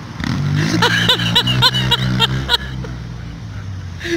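A car engine passing close by, a low steady hum that swells a moment after the start and fades away after about three seconds. Over it comes a woman's high-pitched laughter in quick repeated pulses.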